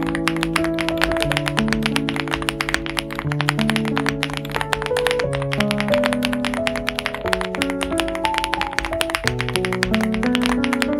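Rapid, continuous typing on a Chilkey ND75 aluminium-cased mechanical keyboard, a dense stream of keystroke clacks, heard over background music with sustained melodic notes.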